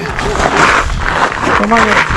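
A man's voice in casual talk, with a steady low rumble underneath.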